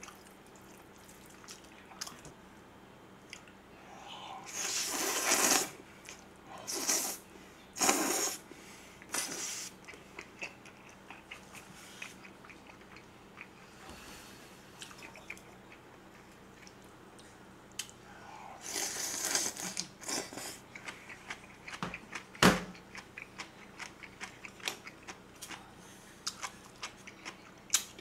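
A person slurping up jjajangmyeon (black-bean-sauce noodles) in several long wet bursts, with chewing and small mouth clicks in between. A single sharp knock comes a little past the middle.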